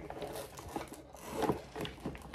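Rustling and scraping of packaging and small items being moved and set down by hand, with a few soft knocks.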